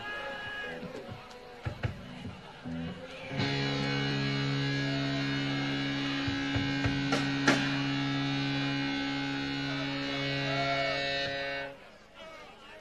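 Amplified electric guitar between songs: a few scattered plucks and string noises, then about three and a half seconds in, a chord rings out and is held steadily for about eight seconds before being cut off suddenly near the end.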